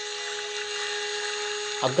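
A steady, even hum of a few fixed pitches over a constant hiss, from some unseen machine or electrical device; a man's voice starts speaking just before the end.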